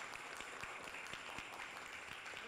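Faint room noise of a large hall: an even hiss with many small, scattered clicks.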